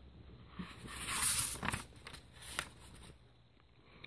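A paper page of a picture book being turned by hand: a rustle of paper that builds about a second in and fades, followed by a couple of light taps as the book is handled.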